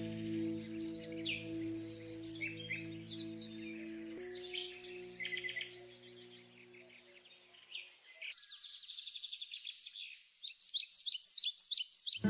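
Recorded birdsong, many short chirps and trills, layered over the last sustained low notes of a music track, which thin out about four seconds in and fade away near eight seconds. After that the birdsong is heard alone, louder and busier near the end.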